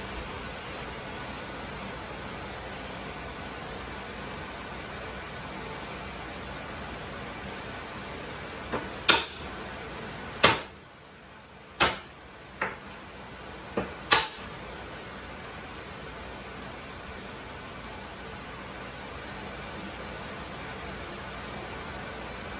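Steady hiss of chicken frying in a pan, with a handful of sharp, irregular knocks in the middle from a knife on a wooden cutting board as garlic is cut.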